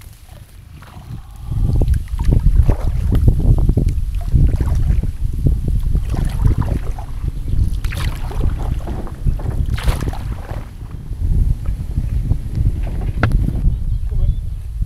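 Wind buffeting the microphone, a heavy low rumble that comes up about two seconds in, over the splashes and drips of a kayak paddle working the water, with two brighter splashes in the second half.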